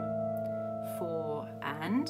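Piano notes held with the sustain pedal down, ringing on and slowly fading without being struck again.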